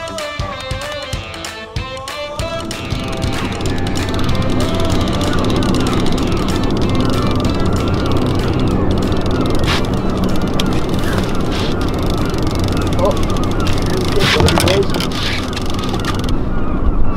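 Background music ends about two and a half seconds in. After that a small outboard motor runs steadily at slow trolling speed, louder from then on.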